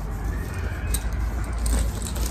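A handbag being handled: a few light clinks of its metal chain and strap hardware over a steady low rumble.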